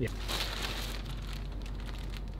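Plastic bags crinkling and rustling steadily as they are handled: a thin plastic shopping bag and a small clear bag of hardware.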